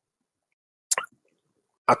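A single short, plop-like click about a second in, otherwise silence on the call audio, before a man's voice resumes at the very end.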